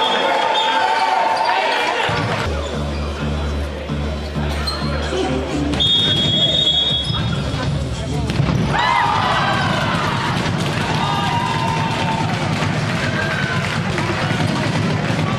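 Handball being bounced on a sports-hall floor amid players' and spectators' shouts. A low rhythmic beat runs from about two seconds in to about six, a shrill whistle sounds for about a second and a half just after it, and a loud shout rises near the two-thirds mark.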